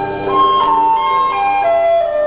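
Dizi (Chinese bamboo flute) playing a slow melody of held notes that step downward in pitch, over a quieter lower accompaniment.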